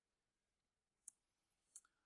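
Near silence in a pause between spoken sentences, broken by a faint sharp click about a second in and two softer clicks near the end.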